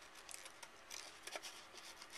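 Scissors cutting through patterned scrapbook paper: a run of short, faint, irregular snips.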